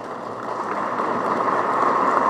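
Audience applause, a dense patter of many hands clapping that grows steadily louder.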